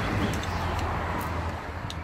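Steady rushing noise of passing road traffic over a low rumble, easing slightly toward the end, with a few faint clicks of a spanner against the engine's injector hold-down clamps.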